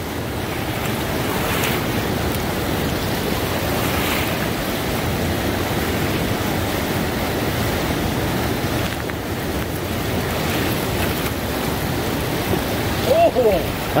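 Steady rushing of a fast river running through rapids, with wind gusting on the microphone.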